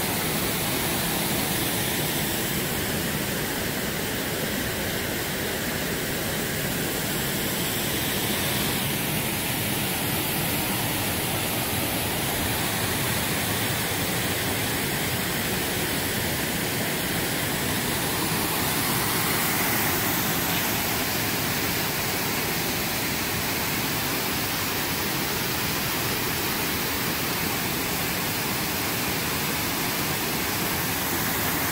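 Mountain stream cascading over granite ledges and small waterfalls, a steady rushing of water whose tone shifts slightly a couple of times.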